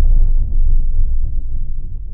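Deep cinematic boom from a logo-intro sound effect, its low rumble slowly dying away.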